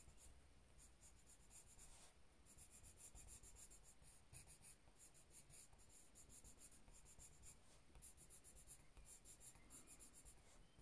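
Faint scratching of a watercolour pencil scribbling on cardstock, in quick back-and-forth strokes with brief pauses.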